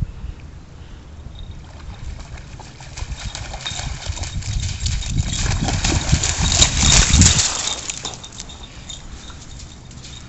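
A German shepherd–border collie mix dog running through shallow lake water, its paws splashing in a quick rhythm. The splashing grows louder as the dog approaches, is loudest about seven seconds in, then drops away.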